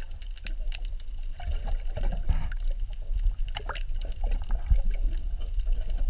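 Water heard from a submerged camera: a constant low rush with scattered clicks, crackles and bubbling.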